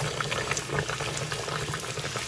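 Pea-stuffed kochuri (kachori) deep-frying in a karahi of hot oil: the oil bubbles and crackles steadily around the puffing dough as a wire spider skimmer holds it under.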